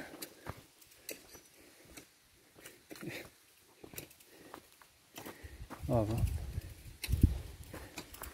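Mostly quiet outdoor sound with a few faint, scattered knocks. A brief voice comes about six seconds in, and a low thump just after seven seconds.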